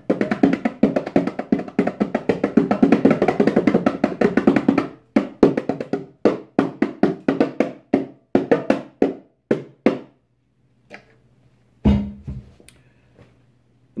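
A pair of Rock Jam bongos played by hand: a fast, dense flurry of strokes for about five seconds, then slower, separate hits with gaps that stop about ten seconds in. A single low thump comes near the end.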